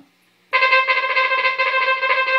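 Synthesized trumpet sound from a Roland SC-55 sound module, played from a DIY breath-controlled electronic valve instrument: a rapid stream of double-tongued notes on one pitch, starting about half a second in.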